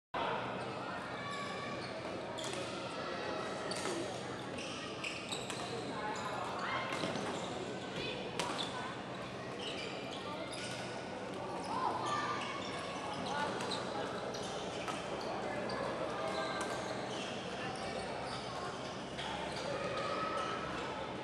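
Badminton rackets hitting the shuttlecock in a doubles rally, with players' shoes squeaking and stamping on the court floor, echoing in a large hall. Voices chatter in the background throughout.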